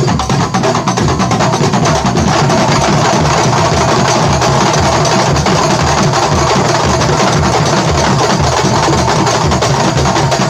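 Kuntulan percussion ensemble of hand-held terbang frame drums and large barrel drums playing together: a dense clatter of frame-drum strokes over a regular low drum pulse. It grows louder and denser over the first couple of seconds, then holds steady.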